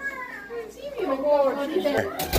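Excited high-pitched voices of women and children exclaiming and chattering over each other in greeting; no words are clear.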